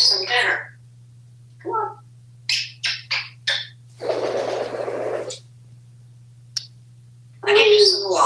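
African grey parrot making a few short, high vocal sounds, then a rush of wingbeats lasting just over a second as it flaps off a bathroom sink about four seconds in. A steady low hum runs underneath, and a voice starts near the end.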